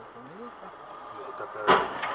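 Steady road noise heard through a car's dashcam, then about three-quarters of the way in a sudden loud crash of a car collision close by on the left.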